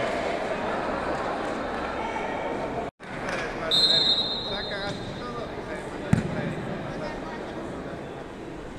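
Murmur of players and spectators in a large indoor sports hall, with a short high whistle about four seconds in. A single ball thud on the wooden court comes about six seconds in.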